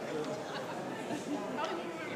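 Indistinct chatter of several people talking at once in a reverberant room.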